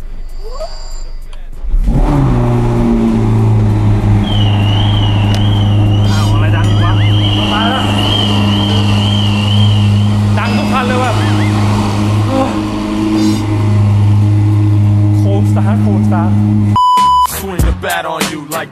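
Ferrari SF90 Stradale's twin-turbo V8 starting suddenly about two seconds in, then idling steadily and loud for about fifteen seconds before cutting off near the end. A warbling high electronic beep sounds over the idle for several seconds.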